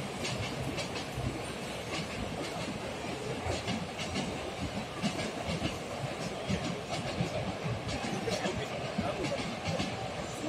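Commuter train running on the tracks, its wheels clicking irregularly over the rails against a steady rumble.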